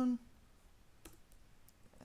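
A few faint, irregularly spaced keystrokes on a computer keyboard as code is typed.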